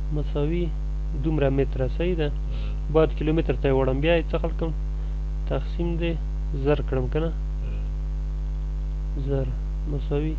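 A man speaking in short phrases over a steady electrical mains hum with many overtones that runs under everything.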